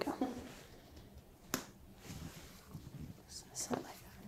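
A reflex hammer tapping the knee once in a knee-jerk reflex test: a single sharp tap about a second and a half in, with faint rustling of hands and clothing around it.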